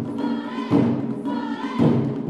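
Japanese taiko drumming with two drawn-out vocal calls from the performers. The drum strokes thin out under each call and come back strongly near the end.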